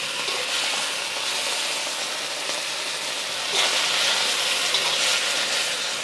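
Seared beef slices sizzling in a hot wok as they are scooped out with a spatula, the wok still hot after its burner was switched off. The sizzle is a steady hiss that grows a little louder about halfway through.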